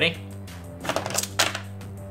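A Pyrus Garganoid Ultra Bakugan, a spring-loaded plastic ball, rolled across a play mat and snapping open into its figure over the metal gate cards, giving a few sharp plastic clicks about a second in. Steady background music plays under it.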